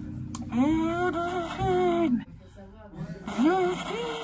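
A woman's voice through a small toy megaphone: two long wordless calls, each rising in pitch, holding, then falling. The first lasts about a second and a half, the second is shorter, near the end.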